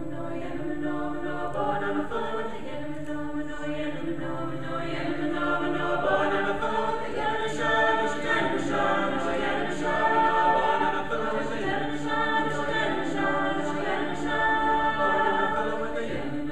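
Mixed-voice a cappella ensemble of about nine singers singing a folk song in close harmony over a steady low held note. The singing grows louder about six seconds in.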